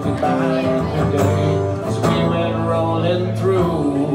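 Live Gibson acoustic guitar being strummed with a man singing along.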